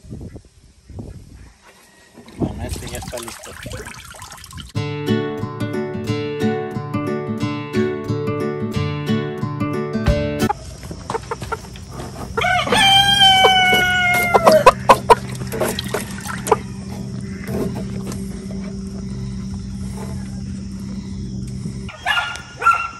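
A rooster crows once, a long call of about two seconds that bends in pitch and is the loudest sound, a little past the middle. Before it, water splashes in a tub as a chicken is dipped, followed by several seconds of music with a steady beat.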